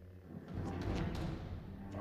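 Film soundtrack from a lightsaber duel: low timpani-like drum hits and music, with the hum and a few sharp swishes of a lightsaber being swung into a guard about a second in.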